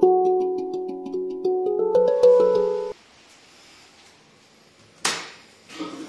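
Handpan played as melodic struck notes, each ringing on, for about three seconds, then cut off suddenly. About five seconds in comes a single sharp knock.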